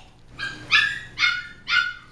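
Pocket Goldendoodle puppies giving four short, high-pitched play yips, about half a second apart, while tussling over a plush toy.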